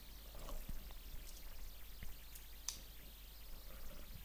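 A few faint, scattered computer keyboard key clicks as a short terminal command is typed and entered, over low background hiss.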